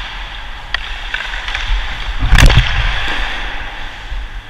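Ice hockey skates scraping and gliding on the ice, heard close on a helmet-mounted microphone, with a sharp click about three quarters of a second in and a loud crack of a hockey stick hitting the puck about two and a half seconds in.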